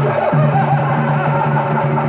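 Live Chhau dance music: a held low note starts right at the outset and continues under a dense, busy layer of instruments.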